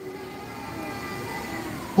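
Steady background noise with faint, indistinct crowd voices.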